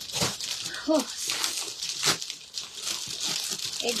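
Plastic garment packaging rustling and crinkling as it is handled, with sharper crackles at the start, about a second in and about two seconds in.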